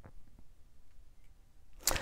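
Quiet handling of a thick, many-layered paper journal held in both hands, with a few faint light taps and rustles. A quick breath in comes near the end.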